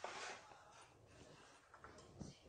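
Near silence: quiet room tone, with a brief faint hiss of noise right at the start.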